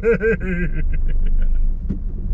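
A man laughing: a quick run of short "ha" bursts in the first second that trails off, over a steady low vehicle rumble.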